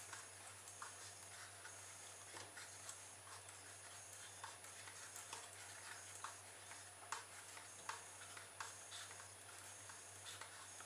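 Faint, irregular clicks, roughly one every half to three-quarters of a second, as the cardboard wheel of a homemade rubber-band car is turned by hand to wind the rubber band onto its paperclip-and-straw axle.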